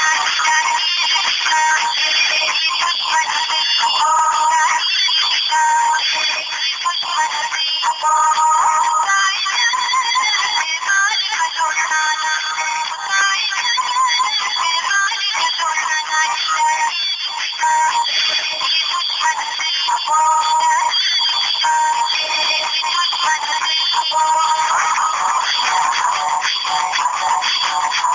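A Pakistan Peoples Party song, singing over music, plays loud and unbroken. It sounds thin, with little bass.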